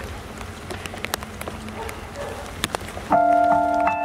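Low crowd murmur with scattered sharp clicks, then about three seconds in a Yamaha Motif XS8 synthesizer keyboard starts a held chord of steady, sustained notes, much louder than the murmur.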